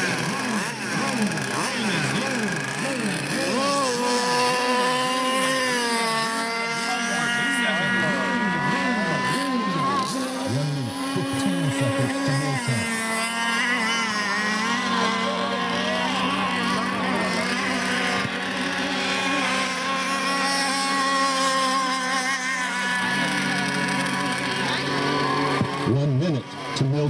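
Several radio-controlled racing boats running on the water, their motors rising and falling in pitch as they throttle up and pass by.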